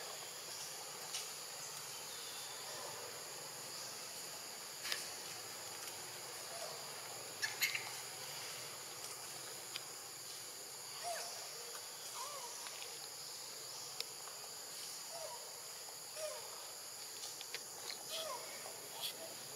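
Steady high-pitched insect chorus, with a few short clicks and several faint brief calls scattered through.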